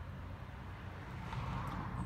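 Faint road traffic: a steady low rumble, with a passing vehicle's noise swelling up in the second half.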